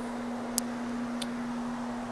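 Single-disc rotary carpet machine running steadily with its microfibre pad scrubbing loop carpet: a steady motor hum. Two sharp ticks come about half a second apart near the middle.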